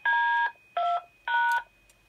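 Three DTMF touch-tone beeps, each a pair of steady tones lasting about half a second, keyed over the radio as a command to the SvxLink node's controller. The node answers a few seconds later that the operation failed, so the command did not take.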